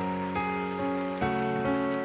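Grand piano playing slow, sustained chords that change about three times.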